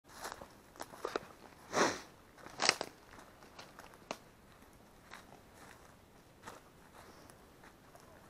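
Irregular crunching footsteps and rustling over dry, brushy ground, with a few sharp clicks; the loudest crunches come about two and three seconds in.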